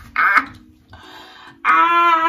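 A woman's excited wordless yells: a short cry just after the start, then a long, high held shout near the end.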